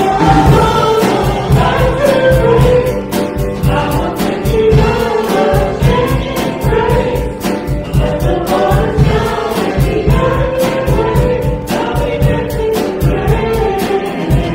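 Live Christian worship song: a man and a woman singing together over acoustic guitar and keyboard, with a steady beat.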